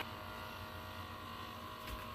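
Faint steady hum, with a thin steady high tone coming in about halfway through; no music.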